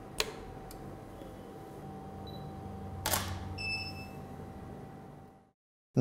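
Canon EOS DSLR shutter clicking: one sharp click just after the start and a longer, louder one about three seconds in, followed by a few brief faint high beeps, over a faint steady hum.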